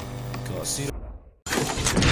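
A TV channel ident sound effect cuts in abruptly after about half a second of silence. A sudden loud, noisy hit comes about one and a half seconds in and runs on into the ident's music.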